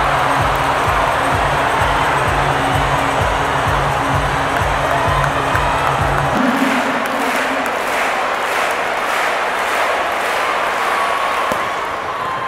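Loud arena music with a heavy, steady beat over the hum of a big crowd. About six seconds in the music cuts off suddenly, and the crowd claps in unison at about two claps a second.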